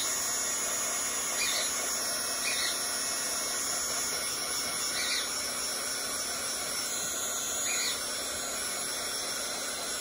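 Small handheld heat gun running with a steady blowing whir, aimed at vinyl to take out the marks left by the sewing machine's presser foot.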